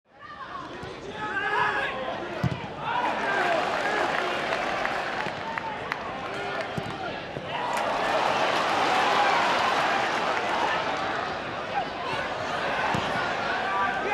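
Football stadium crowd noise with individual fans' shouts, growing louder and denser about eight seconds in as an attack builds. A few dull thuds of the ball being kicked.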